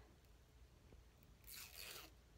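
Near-silent room tone, then near the end a brief soft rustle, about half a second long, as a small lip gloss tube is handled.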